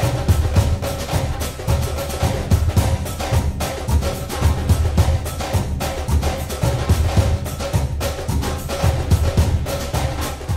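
Background music with a steady percussive beat.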